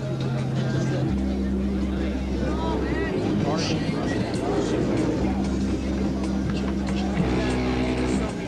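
Competition car-audio system in a dB drag racing car playing loud, steady bass tones that cut in and out and change pitch every couple of seconds, as the car is metered for sound pressure during its run (about 152 dB called for it). Crowd voices are heard over it.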